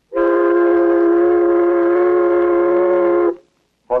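One long, steady blast of a steamboat's steam whistle, several tones sounding together, lasting about three seconds and cut off sharply.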